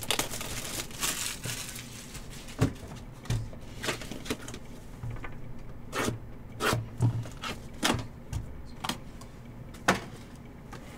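Small cardboard trading-card boxes being handled and opened by hand: a papery rustle at first, then irregular sharp taps and clicks as box flaps are pulled open and the boxes are set down.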